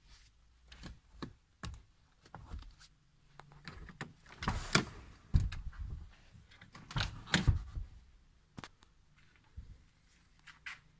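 Rear seatbacks of a Seat Leon ST estate being released and folded down flat: a run of clicks from the seat catches and handling, with louder knocks and thumps about five seconds in and twice more around seven seconds.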